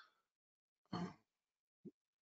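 Near silence in a pause between a man's words, broken by a brief hesitant 'uh' about a second in and a short faint vocal sound near the end.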